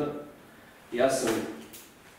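A man's voice speaking in a small room, broken by short pauses.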